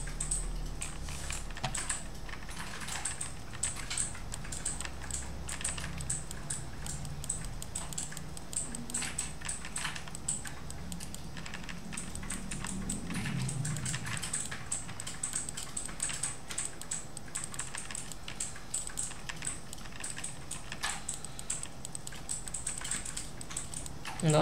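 Light, irregular clicking of a computer keyboard and mouse, many quick clicks in close succession.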